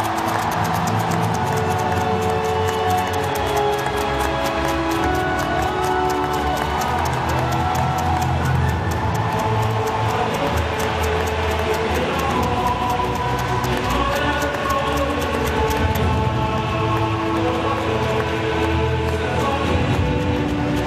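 Music played over a football stadium's public-address system, with held notes over a low bass line and a fast, even ticking beat that drops out near the end.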